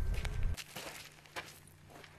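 Low rumble that cuts off abruptly about half a second in, then quiet outdoor background with a few faint crunching footsteps on gravel.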